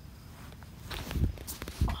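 Blankets rustling and two dull thumps about half a second apart, from someone moving about on a blanket-covered trampoline bed with the phone in hand.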